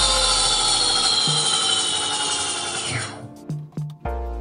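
Electric motorcycle's motor whining as its raised rear wheel spins free, the pitch falling steadily as it coasts down, then sweeping down sharply and dying away about three seconds in. A music bed with a deep bass beat plays underneath.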